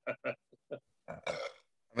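A man chuckling: a few short breathy bursts of laughter, then a longer rougher one a little past a second in.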